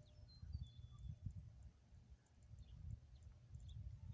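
Near silence outdoors: a faint low rumble with soft, irregular low knocks, and a few faint, brief high chirps.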